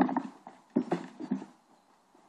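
Sword and shield blows in armoured sparring: two quick flurries of knocks and clatters, weapons striking shields and mail, stopping about a second and a half in.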